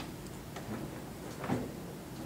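Quiet room tone with a soft knock about one and a half seconds in, and a fainter one just before.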